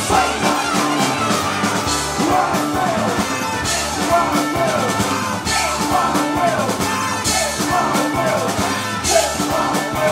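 Live rock band playing at full volume: trumpet, saxophone, electric guitar, bass guitar and drum kit, with a run of short falling notes repeated over a steady beat.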